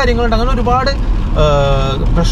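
A man talking, trailing into a long held "uhh", over steady low road rumble inside a moving car's cabin.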